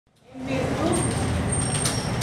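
A voice speaking, starting mid-sentence as the sound fades in, over a steady low room rumble.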